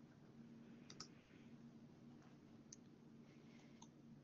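Near silence: faint room tone with a steady low hum and a few faint clicks, the clearest about a second in.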